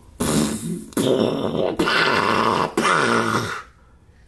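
A man putting on a low, garbled, unintelligible voice in an impression of a big wrestler's way of talking: four rough phrases with short breaks between them.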